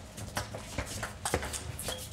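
Table tennis ball in a rally, clicking off the rackets and the table in a quick, uneven series of sharp ticks, a few each second.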